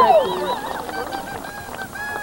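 A crowd cheering and shouting. A long, high held yell slides down and breaks off in the first moments, leaving quieter crowd noise with scattered voices.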